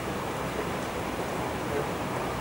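Steady, even background hiss of classroom room noise, with no distinct event.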